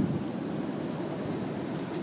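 Steady seaside ambience: an even rushing noise of surf and wind, with no distinct event standing out.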